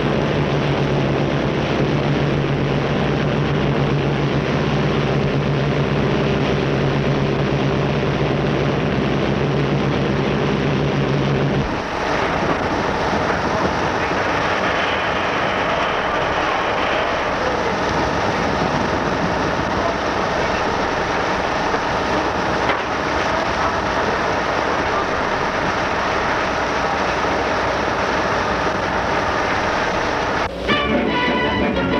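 Steady drone of the Graf Zeppelin's engines, with a low hum, on an old film soundtrack. About twelve seconds in it cuts abruptly to a rougher, noisier rumble that runs on steadily.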